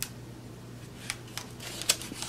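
A few sharp clicks and a light scrape as paint supplies are handled at a plastic palette while blue and black acrylic paint are picked up for mixing; one click comes right at the start, the others about a second in and just before the end.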